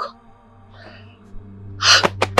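A woman gasps sharply near the end, over background music whose low, sustained note swells in during the second half; a fainter breath comes about a second in.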